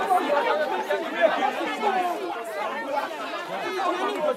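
Several people talking over one another at once: the overlapping chatter of a crowd standing close together.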